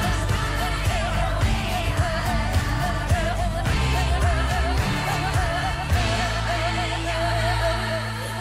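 Opening theme music of a newscast: a singing voice holds a wavering line with vibrato over a rhythmic accompaniment, and the bass settles into a steady held tone about six seconds in.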